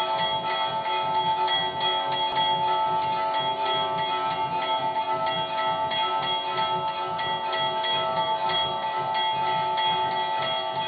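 Temple bells rung rapidly and without pause, their steady ringing tones struck over and over, with a quick low beat beneath, as the aarti is performed.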